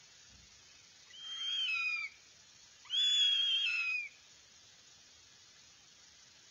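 Northern goshawk nestling calling: two drawn-out, high-pitched calls about a second each, the second a little louder, each dropping slightly in pitch at the end.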